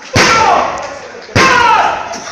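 Two loud slapping impacts about a second apart from lucha libre wrestlers grappling on the ring mat, each followed by a short shout that falls in pitch.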